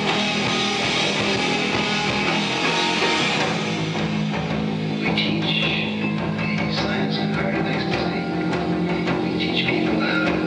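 Post-metal band playing live: loud distorted electric guitars over bass and drums in a dense, heavy wall of sound, which thins out a little about four seconds in.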